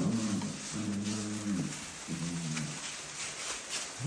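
Bullmastiff puppies growling and grumbling at each other in rough play: four or five short, low growls in a row. Shredded-paper bedding rustles under them near the end.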